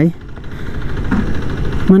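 Motorcycle engine idling steadily while the bike stands still.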